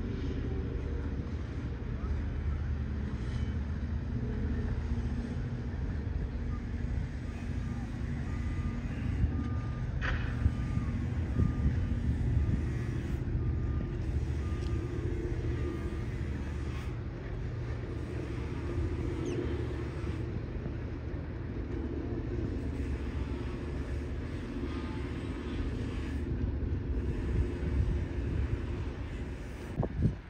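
A steady low engine rumble throughout, with a faint repeated beeping from about ten to sixteen seconds in.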